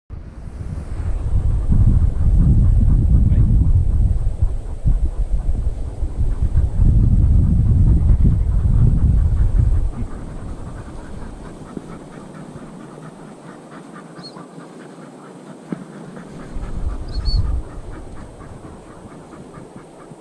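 Wind buffeting the microphone in heavy low gusts for the first half, then easing to a quieter rustle, with a brief gust again later. A few short high chirps come near the end.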